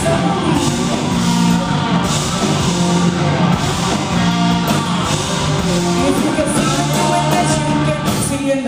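Live blues-rock band playing loud: slide electric guitar over electric bass and drums.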